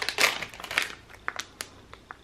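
Thin clear plastic bag crinkling as it is pulled open and handled, mostly in the first second, followed by a few small crackles.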